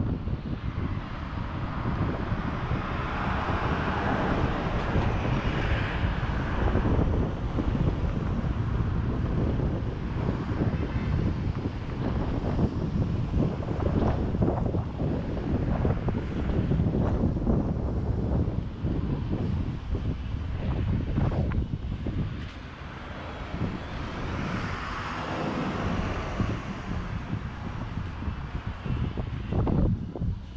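Wind buffeting a GoPro's microphone on a city street, with road traffic going by; two louder vehicle passes swell and fade, a few seconds in and again near the end.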